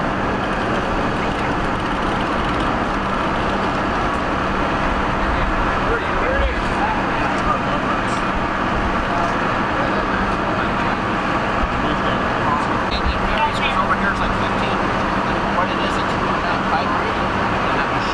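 Steady hum of idling vehicle engines under indistinct voices of rescuers talking, with a few faint clicks and knocks of equipment later on.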